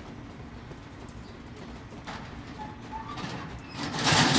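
Street ambience: a steady low rumble of traffic, with a few faint short chirps about two-thirds of the way through and a passing vehicle swelling in near the end.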